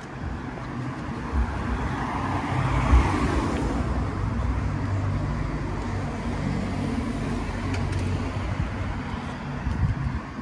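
A van drives along a paved city street toward the microphone, a low engine rumble with tyre noise. It grows louder over the first few seconds and then holds steady as the van draws near.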